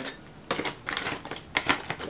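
Rustling of a bag, with light irregular clicks as small wax melt shapes are put back into it, starting about half a second in.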